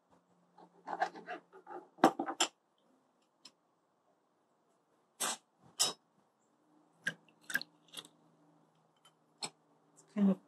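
Knife cutting a lime on a plastic cutting board: a cluster of knocks one to two and a half seconds in. Then sharp clicks of a metal hand citrus press being worked, two about five seconds in and several more around seven to eight seconds, over a faint low hum.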